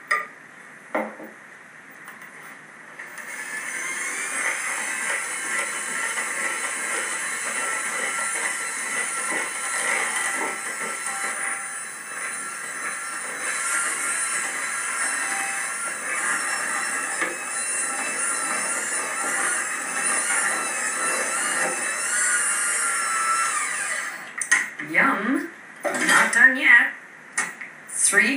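Electric mixer running steadily at speed, beating white chocolate and flour into a whipped egg-and-sugar brownie batter. It starts about three seconds in and stops a few seconds before the end.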